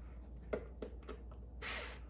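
Quiet pause: a low steady hum with two faint small clicks, and a short breath near the end.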